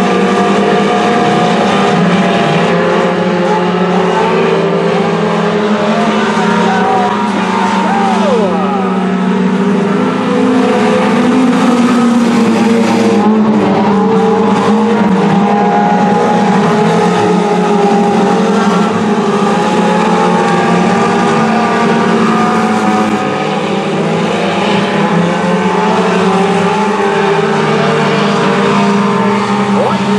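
Several front-wheel-drive race cars' engines running hard together, their overlapping engine notes rising and falling in pitch as the cars go round the track.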